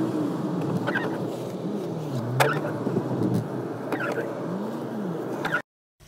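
A car driving across a wet parking lot, heard from inside the cabin: steady engine and road noise, with the engine pitch rising and falling. A brief sharp sound repeats about every second and a half. The sound cuts off suddenly near the end.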